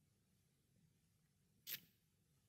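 Near silence: room tone in a pause of speech, with one brief, faint noise near the end.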